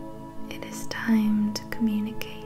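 Soft ambient meditation music of steady held tones, with a quiet whispering voice over it.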